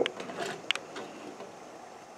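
Faint steady hiss of two lit alcohol burners, a brass Trangia and a Pathfinder, with two small ticks in the first second.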